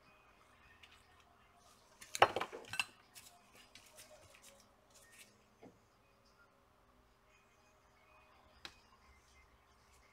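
Small metal hand tools clinking and clattering on a workbench in a burst about two seconds in, then a few lighter clicks, with one sharp tick near the end.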